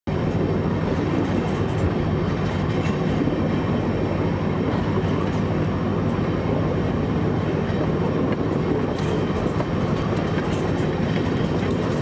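A train rolling slowly along the rails, heard from its front end: a steady low engine drone under the noise of the wheels on the track.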